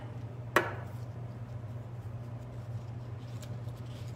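A single sharp click about half a second in, then faint rustling and light taps of construction paper being handled and pressed down onto glued paper, over a steady low hum.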